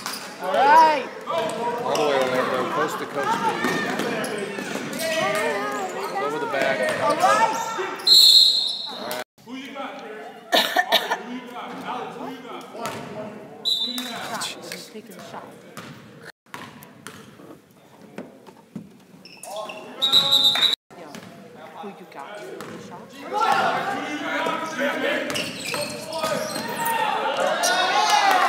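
Basketball game in a gym: the ball bouncing on the court floor, with players and spectators shouting, echoing in the hall. Three brief shrill high tones stand out, at about 8, 13 and 20 seconds.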